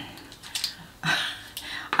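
Small items on a cluttered desk being moved and set down while it is tidied: a few light clatters and knocks, the loudest about a second in.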